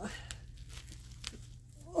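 Faint crinkling and scratching of a plastic-wrapped pack of fabric precuts being picked at by hand, a few small scratches over a low steady hum, without the wrapper tearing open.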